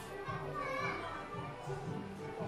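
A child's high voice over other voices and background music with steady low notes.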